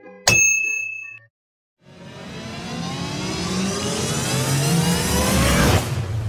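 Sound effects from a subscribe-button animation: a click with a short bell-like ding, then, after a moment of silence, a rising whoosh that builds for about four seconds and cuts off near the end.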